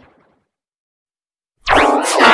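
The tail of an audio-effected logo sound effect fades away just after the start. After a silent gap of over a second, the next one starts loudly near the end: a short cartoonish pitched sound whose pitch slides.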